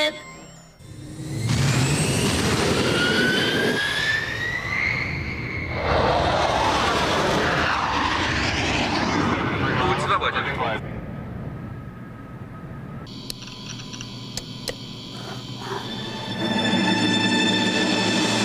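Science-fiction cartoon sound effects: loud jet-like whooshes rising in pitch, then a quieter stretch of electronic beeps and clicks. Music swells in near the end.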